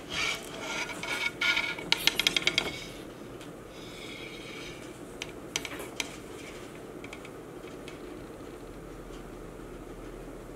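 Metal feeding tongs scraping and clicking against a glass reptile enclosure as a live rat is lowered in, with a quick run of sharp clicks about two seconds in. After about three seconds only faint, steady room noise remains.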